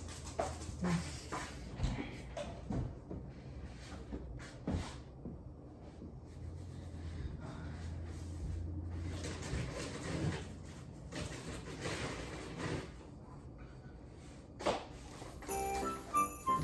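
Scattered knocks and clatter of someone moving about off-camera, over a low steady hum. About a second before the end, jingle-bell music starts.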